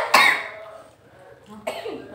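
A person coughing sharply at the start, then a lull before talking resumes near the end.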